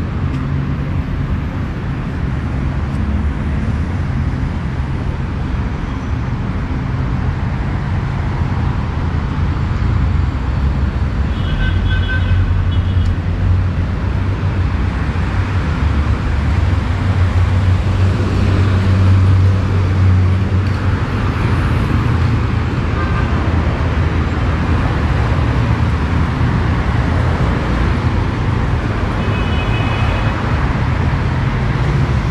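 Steady road traffic on a multi-lane city avenue: passing vehicles make a continuous low rumble that swells in the middle. Brief high-pitched tones cut in twice, about twelve seconds in and again near the end.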